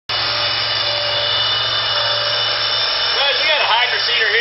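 A loud, steady machine-like whirring noise with a faint held tone in it. About three seconds in, pitched, wavering sounds join it.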